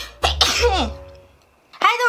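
A woman's cough and throat clearing in the first second, a sign of her pollen allergy (hay fever), followed by a short spoken word.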